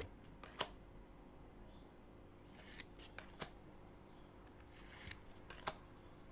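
Faint handling of a deck of oracle cards as cards are slid off the front of the pack one at a time: soft sliding with about seven short, sharp card snaps spread through the few seconds.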